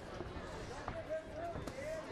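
Live kickboxing bout in a cage: a few sharp thuds from the fighters' footwork and strikes on the mat, over a low crowd background, with a single voice calling out in a long held shout from about halfway through.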